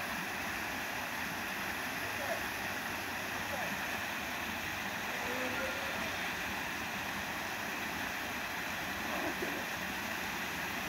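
Small waterfall cascading into a rock pool: a steady, unbroken rush of falling water.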